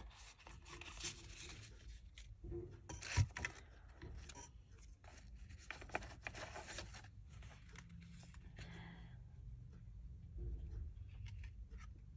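Faint paper-and-card handling: a stack of small picture cards being leafed through and set down, with soft rustles and taps and one sharper knock about three seconds in. Quieter rustling of paper in the later part.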